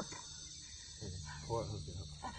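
Steady high-pitched drone of insects, with a faint voice briefly about a second and a half in.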